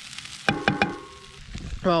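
A spatula knocks three or four times in quick succession against a frying pan of hash browns about half a second in, leaving a brief metallic ring, while the food sizzles faintly over the campfire.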